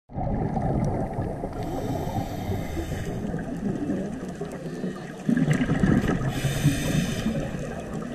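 Muffled underwater noise picked up by a camera in a housing, a dense low rush throughout. A thin hiss comes in twice, about a second and a half in and again around six seconds, and the low rush grows louder from about five seconds in.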